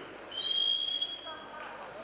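A referee's whistle blown once: a single steady, slightly rising blast of about a second, two tones sounding together.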